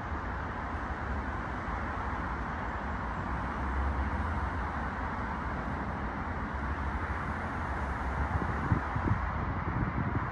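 Steady outdoor background noise with a low rumble, with a few faint knocks near the end.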